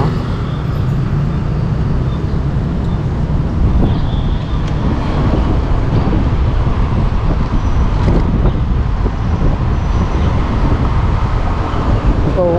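Wind rushing over a helmet-mounted action camera's microphone, with road and traffic noise, while riding an electric scooter through city streets: a steady low rumble that swells and eases, with no engine note.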